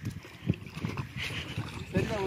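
Splashing in shallow lake water, a few sharp irregular splashes, the strongest about half a second in, over low wind rumble on the microphone.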